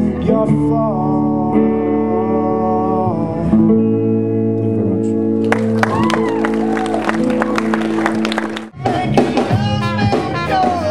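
Live electric guitar music: held chords ring for the first few seconds, then a man's singing voice joins from about halfway. Near the end the sound dips sharply and a different band's song starts.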